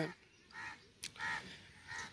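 Three short, faint bird calls about two-thirds of a second apart, with a light click between the first two.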